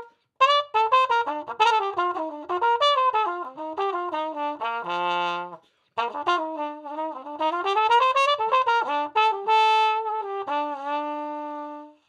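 Trumpet with a Denis Wick cup mute, its adjustable cup set about halfway in, playing a quick melodic line in two phrases, each ending on a held note. The cup mute gives a mellowed tone.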